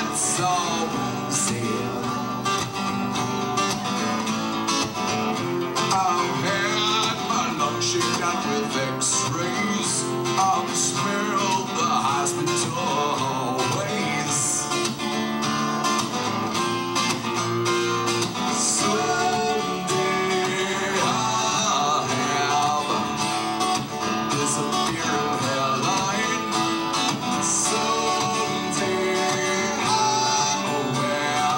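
A strummed acoustic guitar with a man singing in a baritone voice, playing continuously as a song.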